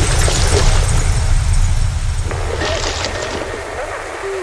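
Heavy deathstep/tearout dubstep music: a deep bass rumble that slowly fades, with harsh distorted noise bursts and short sliding synth tones near the end.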